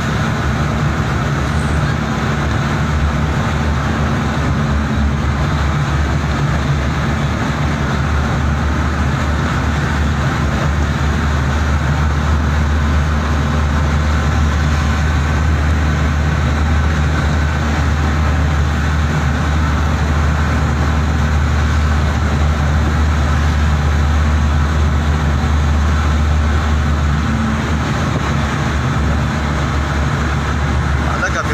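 Steady engine drone and road noise of a vehicle cruising at a constant speed, heard from on board, with a strong low hum that holds level throughout.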